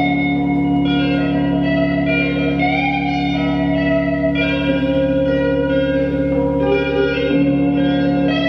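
Electric guitar played through effects in an ambient piece: sustained, bell-like ringing notes layered over a steady low drone, the upper notes shifting every second or two.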